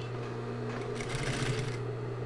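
Industrial sewing machine stitching fabric in one short burst lasting under a second, about a second in.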